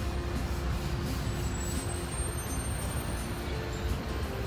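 City street traffic: a steady low rumble of road vehicles, with a faint high squeal about halfway through.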